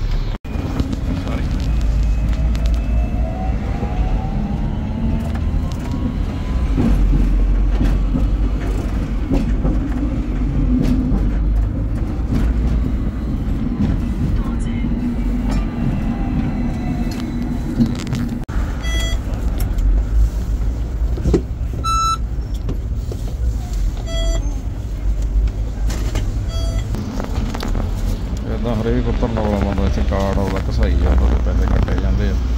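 Hong Kong double-decker electric tram running on its street rails, heard from the front of the lower deck: a steady low rumble, with the traction motor's whine rising in pitch as the tram gathers speed early on and again near the end. Several short ringing tones come in the second half.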